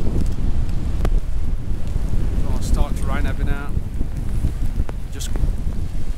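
Strong wind buffeting the microphone, a loud low rumble throughout. A person's voice is heard briefly, about two and a half seconds in.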